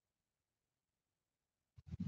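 Near silence: room tone, then near the end a few short scratching strokes of a marker on the whiteboard.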